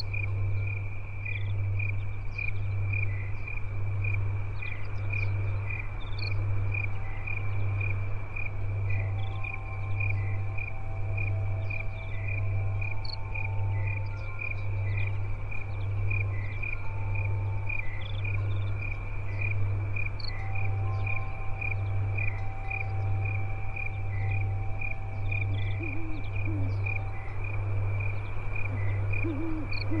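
Night-time forest soundscape: crickets chirping in an even rhythm of about one chirp a second, with scattered short bird calls above them. Under it runs a loud low hum that pulses about once a second, and faint held tones come and go.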